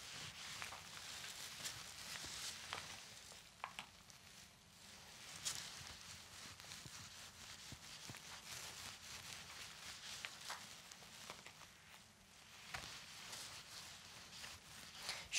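Faint swishing and soft clicks of a roller spreading a thick coat of polyester resin across a board.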